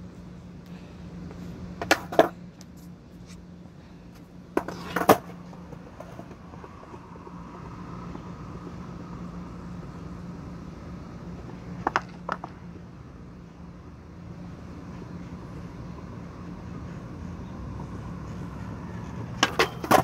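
Skateboard on a concrete skatepark: a few distant clacks of the board, then the wheels rolling on concrete, growing louder as it approaches, and a cluster of sharp clacks near the end as the board is popped onto a metal rail and landed. A steady low hum runs underneath.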